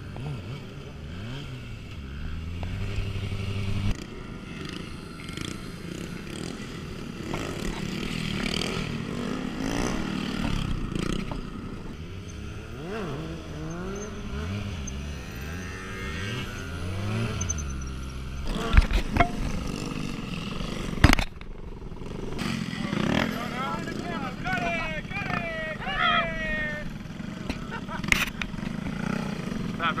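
Sport motorcycle engine held at varying revs, its pitch stepping up and down as the bike is ridden on its back wheel. Two sharp knocks come a little past halfway, and voices rise over the engine near the end.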